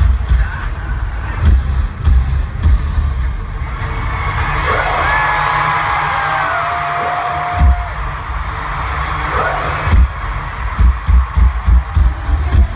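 Live pop concert music played loud through a stadium PA and recorded on a phone from the floor. A heavy bass beat drops out for several seconds in the middle, leaving a held, gliding melody line over crowd noise, then comes back near the end.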